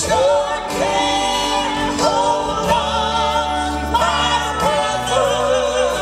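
Live gospel vocal group of men and women singing in harmony with piano and band accompaniment, long held notes with vibrato, a new phrase about every second.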